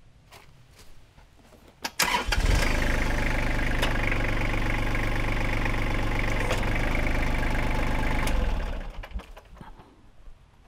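Kubota compact tractor's diesel engine started about two seconds in, run at a steady idle for about six seconds while the front-loader grapple is hydraulically opened, then shut off and running down near the end.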